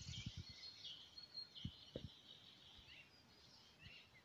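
Faint birdsong: small songbirds chirping and twittering in short high phrases, with a few soft low thumps near the start and about two seconds in.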